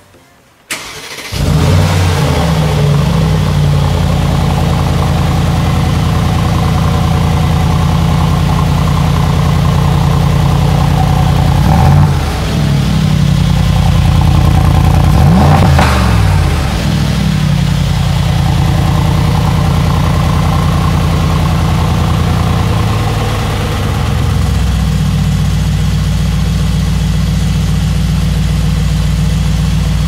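Brabus-modified 2020 Mercedes-AMG G63's 4.0-litre twin-turbo V8 cold-started in Sport+ mode. It catches about a second in with a flare, then settles into a steady, deep idle through the side-exit exhaust. Two short blips of the throttle come around 12 and 16 seconds in.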